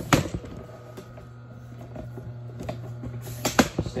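Camera tripod being handled as its legs are collapsed: a sharp knock just after the start, scattered clicks, and a louder cluster of knocks near the end, over a steady low hum.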